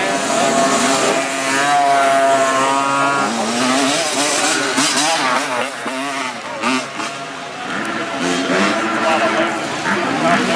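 Small dirt bike engine revving hard. Its pitch holds high and wavers for a couple of seconds, then rises and falls repeatedly as the throttle is worked.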